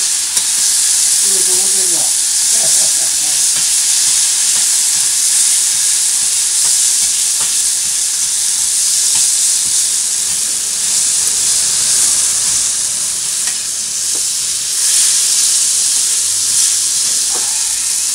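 Noodles, cabbage, potato and meat frying on a hot iron griddle: a steady sizzle, with now and then the click and scrape of metal spatulas as they toss the food.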